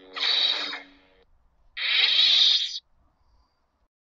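Two short, breath-like hissing sounds, each about a second long, the second starting nearly two seconds in.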